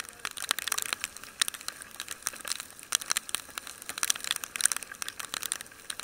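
Raindrops striking the camera and its microphone on a moving motorcycle: a dense, irregular patter of sharp ticks.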